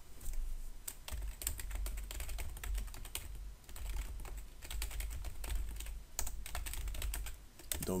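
Typing on a computer keyboard: an irregular run of key clicks with short pauses, over a steady low hum.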